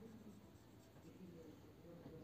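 Faint strokes of a marker pen drawing on a whiteboard, lines and zigzag resistor symbols, over quiet room tone.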